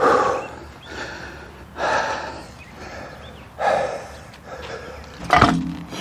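A man breathing hard, out of breath from hauling a heavy log splitter by hand up a grade: noisy breaths in and out about once a second, every other one louder. A brief sharp sound near the end.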